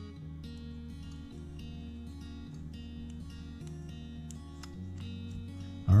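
Background music of plucked and strummed guitar, with held notes that change every second or so.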